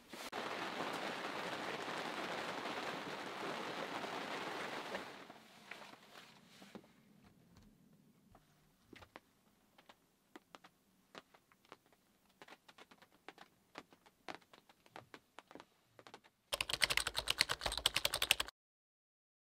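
A steady hiss for the first five seconds that fades away, then scattered faint clicks. Near the end comes a fast, loud run of typewriter key clicks as on-screen text types itself out.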